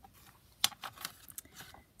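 Paper and card being handled: a handful of short, crisp rustles and taps as a decorated paper pocket is set down and positioned on a journal page.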